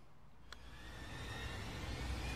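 A putter striking a golf ball once, a single click about half a second in. It is followed by a rushing noise with a faint whistle in it that swells over the next two seconds.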